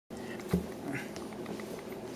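A knock about half a second in, then a brief high call from a pet around a second in.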